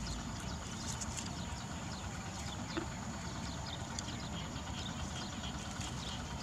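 Quiet outdoor background: a steady low rumble, like a distant engine, with faint short high chirps scattered through it.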